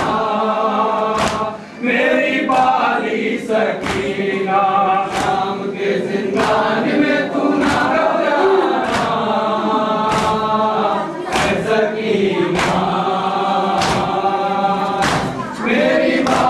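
A group of mourners chanting a noha, an Urdu lament, in chorus, with a sharp beat about every second and a quarter keeping time.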